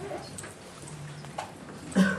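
Faint low murmuring voices and small handling noises, with one short knock partway through and a louder voice sound starting right at the end.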